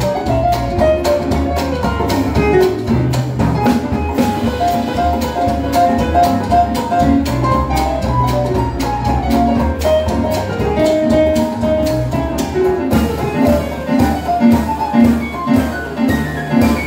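Live Dixieland jazz band playing at a steady swing beat, with a Roland RD-800 digital stage piano among the instruments and a line of repeated held notes in the melody.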